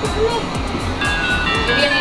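Crab-shaped bubble-machine bath toy playing a tinny electronic melody, starting about a second in, over background music with a steady beat.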